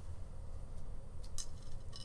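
A few light clicks of two stainless steel dental extraction forceps, a 150 upper and a 151 lower, touching as they are handled in gloved hands, bunched around the middle.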